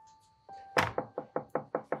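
Someone knocking on a door: a rapid run of about eight knocks that starts a little under halfway in, the first one the loudest. Faint background music plays under the knocks.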